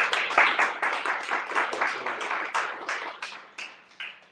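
Applause from a small live audience, the separate hand claps distinct, dying away near the end.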